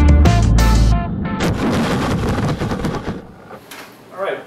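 Background music with a heavy bass line and hard drum hits stops about a second in. A hiss-like wash follows and fades out over the next two seconds.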